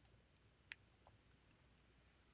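Near silence with a faint computer-mouse click a little under a second in and a fainter click shortly after.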